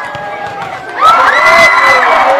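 A large crowd of school students shouting and cheering during a schoolyard football game, breaking into a sudden loud roar of cheering about a second in, a reaction to a kick of the ball.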